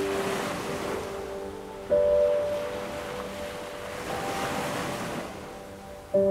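Ocean surf washing in and out, mixed with slow piano music: a sustained chord struck about two seconds in and a single higher note about four seconds in.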